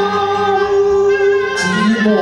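A woman singing one long held note in a Cantonese opera duet, over instrumental accompaniment; the melody moves on again near the end.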